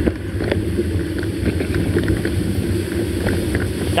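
Motor vehicle running uphill: a steady engine rumble with wind buffeting the microphone, and a few light clicks.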